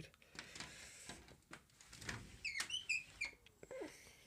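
Aluminium-framed sliding glass door being slid open by hand, its frame clicking and scraping along the runner, with a few short high squeaks about two and a half seconds in.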